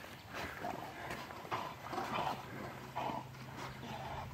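Dogs swimming close by: short, irregular puffs of breath and sloshing water from their paddling, roughly every half second.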